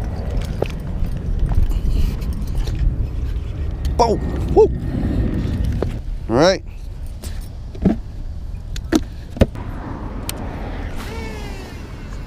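Road traffic passing close by: a steady low rumble through the first half that eases after. A few short vocal sounds and some sharp clicks come in the second half.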